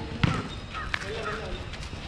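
A basketball bouncing on a hard asphalt court: a sharp thud about a quarter second in and another about a second in, with players' voices calling faintly.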